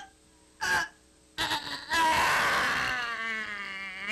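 A woman retching: a short gasp, then about two seconds in a loud, rough heave that runs into a long drawn-out groan, slowly sinking in pitch.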